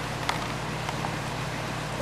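Aquarium air pump running and air bubbling up through the water of a bucket: a steady low hum under a soft hiss, with a few faint pops.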